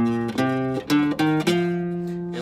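Nylon-string classical guitar playing a short phrase of plucked notes, five in quick succession, the last held and left ringing.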